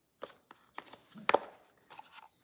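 A few short, sharp clicks and taps from a plastic pepper container being handled and its flip-top lid opened, the loudest a little past halfway.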